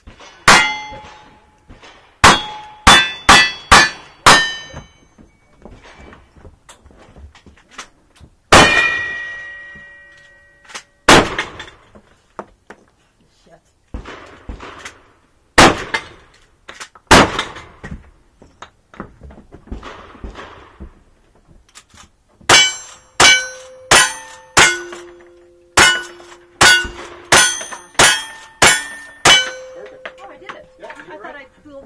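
Gunshots at a cowboy action shooting stage, each followed by the ring of a struck steel target. A quick string of five revolver shots comes about two seconds in, a few spaced shots follow in the middle, and a rapid string of about ten lever-action rifle shots with ringing plates comes near the end.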